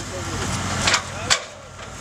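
Two sharp knocks, about a second in and again shortly after, as a firefighter's long hook pole strikes and prises the wooden boards of a burning shed's gable. Under them is a steady low engine hum that fades out near the end.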